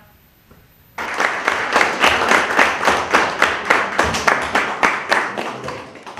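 A group of people applauding, starting suddenly about a second in and dying down near the end.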